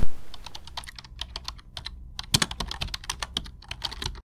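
Rapid, irregular clicking like typing on a computer keyboard, starting about half a second in, with a louder cluster of clicks a little past the middle.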